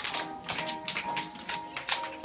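A song plays while a group of small children clap their hands along with it, in many quick, uneven claps.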